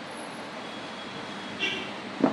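Steady background noise with no clear source, with a brief faint high-pitched sound about one and a half seconds in.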